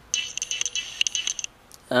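A light jingling rattle of quick, high-pitched ticks, lasting about a second and a half.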